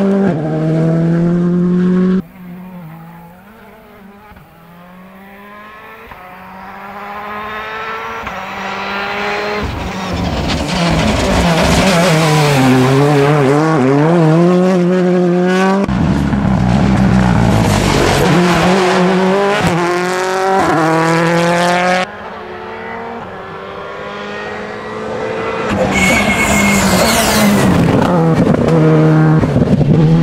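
Rally cars passing one after another at full racing speed, engines revving hard, their pitch climbing and dropping with throttle and gear changes. The sound breaks off abruptly about two seconds in, again about halfway and again near two-thirds, where one pass is cut to the next.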